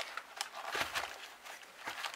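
Gloved hands handling a cardboard booster box of foil card packs: scattered light knocks and rustles, with a soft thump about a second in.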